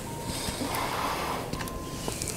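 A person's heavy breath, a soft rush of air lasting about a second, followed by a few faint clicks near the end.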